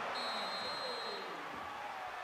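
Faint arena crowd hubbub at a college basketball game, with a referee's whistle blowing one steady high note for about a second near the start.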